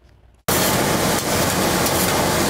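Meat patties sizzling on a flat-top griddle: a steady hiss that starts abruptly about half a second in.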